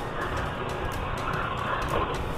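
Motorcycle running at low road speed, its engine rumble mixed with wind and road noise on the camera microphone.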